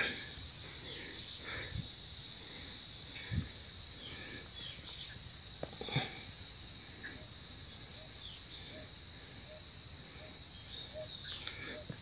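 Steady high-pitched chorus of insects, with a few soft knocks and rustles of loose soil being pushed around by hand, about two, three and a half and six seconds in.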